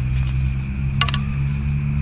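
A steady low hum, with a faint, thin, high steady drone above it and one sharp click about a second in.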